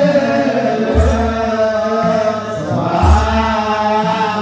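Ethiopian Orthodox zema chant, sung slowly by a group of clergy in unison, with two deep kebero drum strokes about two seconds apart.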